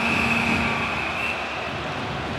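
Arena crowd noise, with the end-of-period horn sounding a steady low tone that stops under a second in. A high steady whistle tone over it ends about a second and a half in.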